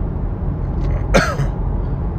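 A man coughs once, sharply, about a second in, over a steady low background rumble.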